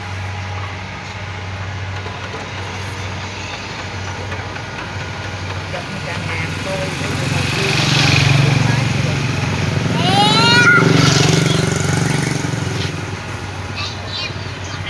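A steady low engine hum that grows louder twice in the middle, with a child's rising squeal about ten seconds in.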